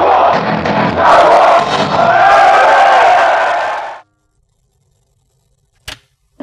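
Live punk rock band playing with the crowd shouting. It cuts off abruptly about four seconds in, followed by silence and one short click near the end.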